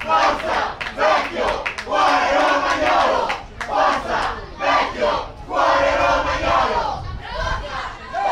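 Crowd of spectators shouting, several voices yelling together in loud bursts about a second long, one after another.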